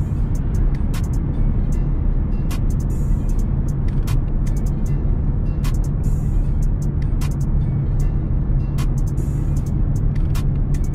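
Steady low drone of a 2016 Ford Mustang EcoBoost driving at road speed, engine and tyre noise heard inside the cabin, with scattered sharp ticks at irregular times. Music plays along with it.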